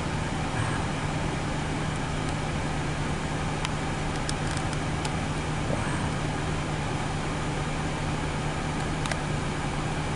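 Steady background noise: a constant low hum under an even hiss, with a few faint ticks around four to five seconds in and again near nine seconds.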